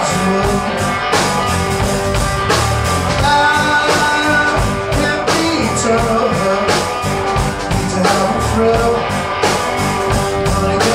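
Live blues-rock band: an electric guitar plays lead lines with held notes that bend up in pitch, over a drum kit keeping a steady beat.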